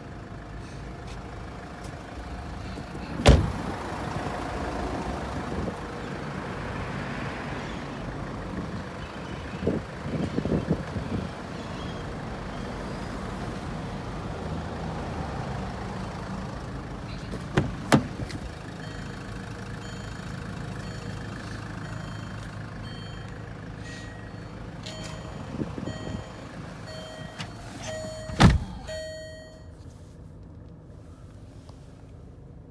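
Range Rover Evoque's engine idling steadily, broken by three loud car-door slams: a few seconds in, about halfway through and near the end. Just before the last slam, a beeping tone repeats about once a second.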